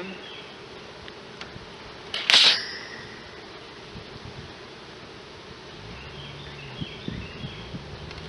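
Honeybees buzzing around an open hive, a steady hum. A short, loud hiss comes about two seconds in, and a lower, steady buzz comes in near the end.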